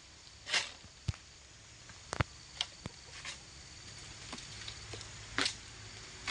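Quiet outdoor background with scattered faint clicks and two short rustling swishes, one about half a second in and one near the end.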